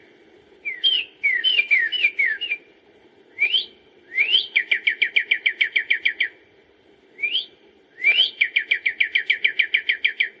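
Bird song: repeated phrases of fast, evenly spaced downslurred whistled notes, about ten a second. Several phrases open with a single rising whistle, and there are short pauses between phrases.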